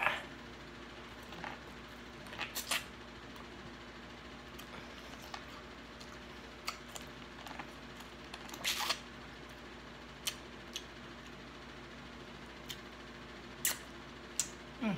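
Eating boiled corn on the cob close to the microphone: scattered short bites, crunches and wet mouth clicks, with the loudest cluster a little past the middle, over a faint steady hum.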